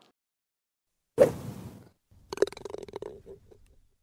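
Logo sting sound effect: a sudden hit about a second in that fades over about half a second, then a quick clatter of short taps that dies away near the end.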